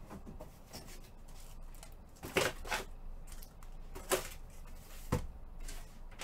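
Handling sounds at a table: soft rustling with a few sharp knocks or clacks, the loudest a pair about two and a half seconds in, then single ones near four and five seconds.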